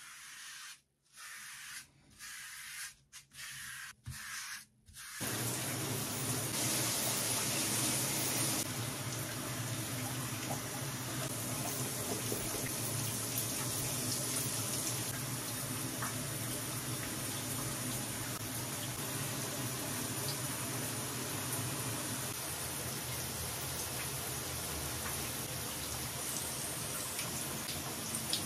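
Shower water running steadily, a continuous rushing spray that starts about five seconds in after a few faint, broken sounds.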